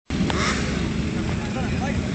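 Motorcycle engines running at idle, a steady low rumble, with people talking faintly in the background.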